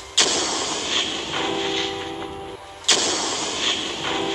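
A sudden noisy hit with a steady hum under it, twice, about two and a half seconds apart. The two are alike, as a looped sound effect would be.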